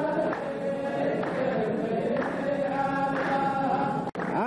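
A chorus of men chanting a verse of qalta poetry in unison, with handclaps about once a second.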